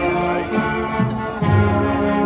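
Marching band playing a tune on brass, trombones prominent, with held notes changing about every half second.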